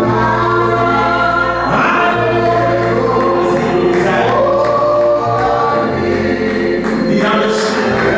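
Gospel song sung by a group of voices in a church, over an instrumental accompaniment whose low bass notes are held and change every second or so.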